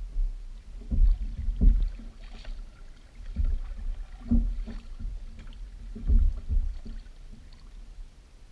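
Kayak being paddled: paddle strokes in the water with low thuds knocking through the plastic hull, about six of them, some in quick pairs, every two to three seconds.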